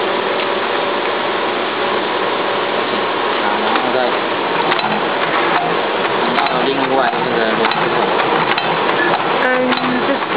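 Lead forming machine's gear train and carry wheel being turned slowly by hand, light mechanical clicking over a steady loud hiss of workshop noise.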